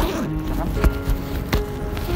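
Background music with held notes, with two short clicks under a second apart.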